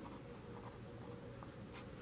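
Faint scratch of a felt-tip marker writing on a whiteboard.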